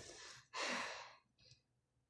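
A boy sighing: one audible breath out, about half a second in and about half a second long, close to the microphone.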